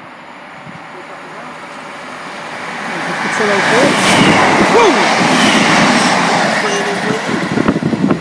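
A class 150 Sprinter diesel multiple unit coupled to a class 156 passing through the station. The noise of the approaching train builds steadily, is loudest about four to six seconds in as it goes by, then begins to fade.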